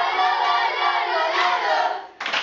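A group of boys cheering and shouting together in celebration of a championship, loud and ringing off the tiled walls of a shower room.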